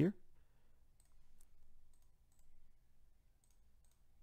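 A handful of faint, scattered clicks from a computer mouse and keyboard as text is pasted into a form field.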